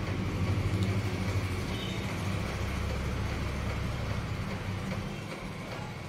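Sliced onions, green chillies and ginger sizzling in mustard oil in a kadhai as they are stirred, over a steady low hum.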